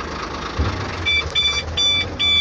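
HOWO dump truck's diesel engine running with the PTO engaged, its sound swelling about half a second in as the tipper joystick is pulled back to raise the body. About a second in, a high warning beeper starts, beeping about twice a second while the tipper body rises.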